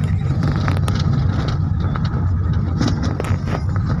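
A car driving on a snow-covered road, heard from inside the cabin: a steady low rumble of the engine and tyres, with a few faint clicks.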